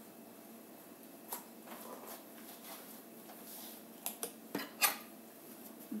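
A metal teaspoon and kitchen utensils clinking and knocking against a plastic bowl and the countertop: a few scattered light knocks, the loudest just before five seconds in.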